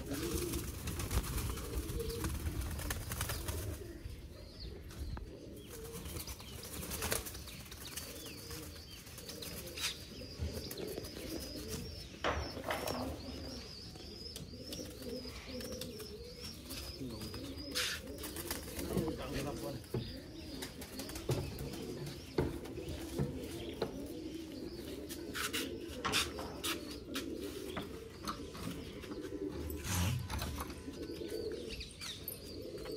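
Domestic pigeons cooing continuously in a low, wavering chorus, with scattered sharp clicks and rattles from a wire pigeon cage being handled.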